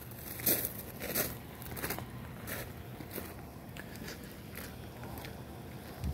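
Footsteps crunching on gravelly dirt, a short crunch every half second or so, fading toward the end.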